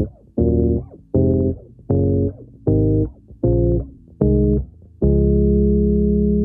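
Five-string electric bass playing chords through the D-flat major scale, from D-flat major back up to D-flat major. One chord is struck a little under every second and cut short, and the final chord is left to ring for about two seconds.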